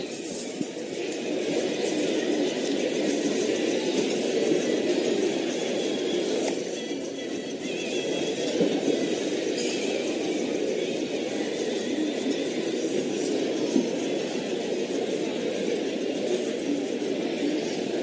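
Steady background noise of a show-jumping arena: an even crowd murmur from the stands, with no distinct events standing out.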